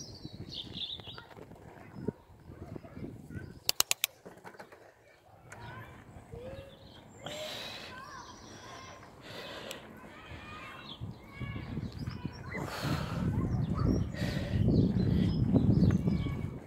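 Birds chirping and calling, with a quick run of sharp clicks about four seconds in. Rumbling wind and riding noise from a moving bicycle grow louder through the second half.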